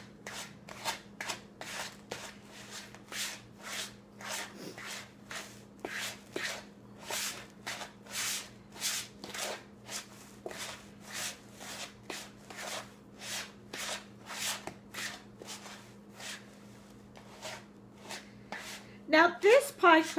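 Spoon stirring buttered graham cracker crumbs in a plastic mixing bowl, a rhythmic scraping of about two strokes a second as the crumbs are worked until all are moist for a pie crust.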